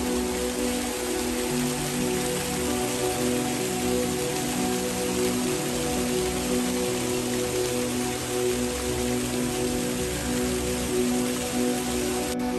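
Fountain water splashing in a steady hiss, over slow background music with long held notes.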